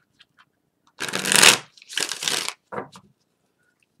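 A deck of tarot cards being shuffled by hand: three short bursts of card rustle, the first starting about a second in and the loudest.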